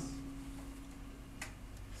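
A single sharp click about one and a half seconds in, over quiet room tone with a faint steady hum.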